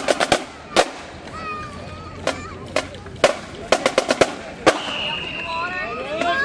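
Marching band drums giving sharp, scattered strikes, some in quick clusters, as the drumline passes, with people's voices between the hits. A held high tone sounds about five seconds in.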